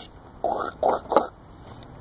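A few short, breathy mouth noises from a man, three quick puffs about a second in, the last ending in a click.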